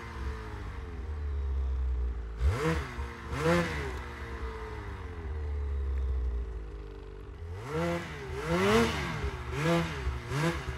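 Ski-Doo snowmobile engine idling, blipped in short revs: two quick revs a few seconds in, then a longer run of rising and falling revs near the end.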